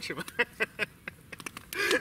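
Campfire crackling, a string of short sharp pops from burning wood in a pause between speech.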